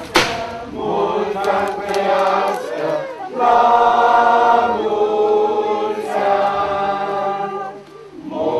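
Background music: a choir singing long held chords, swelling loudest in the middle and easing off near the end.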